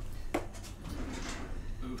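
Kitchen trash can lid being opened: one sharp clack about a third of a second in, then soft handling noise.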